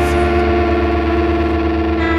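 Instrumental close of a rock song: a held, distorted electric guitar chord run through effects, ringing over a fast pulsing low note, its bright top fading away.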